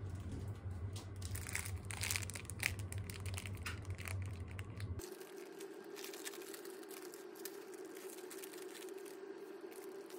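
Clear plastic food packaging crinkling as it is handled and unwrapped, in irregular crackles. The crackles are loudest in the first half; after an abrupt change about halfway they go on more faintly over a steady low hum.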